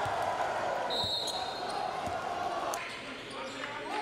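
Gymnasium game ambience: a crowd chattering in a large hall, with faint basketball bounces on the hardwood court.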